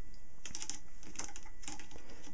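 Light clicks and scrapes of a plastic-sleeved aluminium rod and a larger aluminium tube being handled, in a few short clusters about half a second apart.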